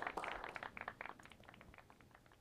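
Audience applause, many overlapping claps that fade away.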